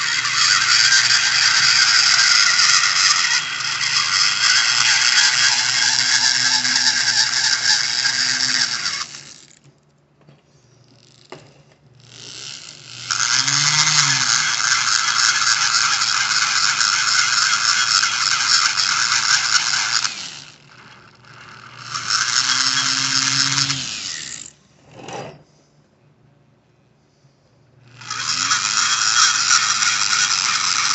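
A die grinder grinding out the exhaust port of an aluminium F6A DOHC turbo cylinder head. It runs in four bursts, three of them lasting several seconds, and stops in between, its pitch rising as it spins up and falling as it winds down.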